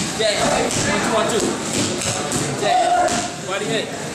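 Boxing gloves smacking into focus mitts several times during pad work, with men's voices talking over it.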